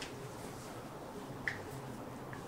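A single short, sharp click about one and a half seconds in, against quiet room tone: the elbow joint cracking under a hand-applied chiropractic adjustment.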